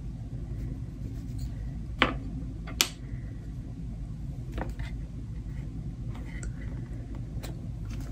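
A few small sharp clicks and taps from handling stickers and stamping supplies on a desk, two louder ones about two and three seconds in, over a steady low room hum.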